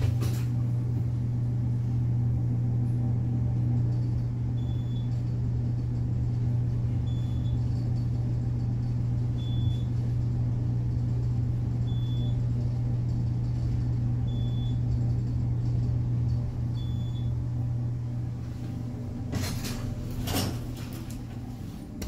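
A 1975 Montgomery traction elevator riding up, with a steady low hum of the car and hoist machine in motion. A short high beep sounds about every two and a half seconds, six times, as the car passes each floor. The hum eases off as the car slows and stops, and a few clattering knocks follow near the end.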